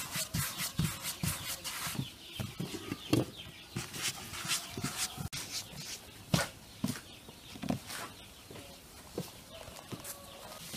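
Hands patting and rolling soft dough into balls on a floured wooden board: a run of short, irregular soft taps. Chickens cluck in the background.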